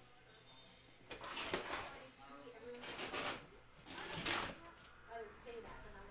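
Three brief rustling swishes of paper and cardboard as a large photo mailer is handled, with faint low voices between them.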